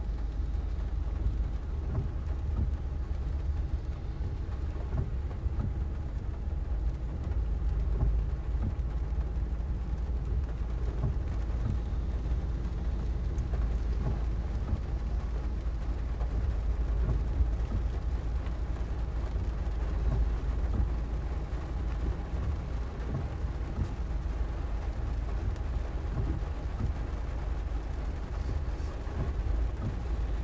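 Rain falling on a car's windshield and body, heard from inside the stopped vehicle, over a steady low rumble.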